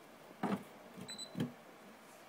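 Plastic knocks and clicks of a wireless Bluetooth OBD adapter being pushed into a car's OBD port, about half a second in and again around a second and a half, with a brief high beep just after one second.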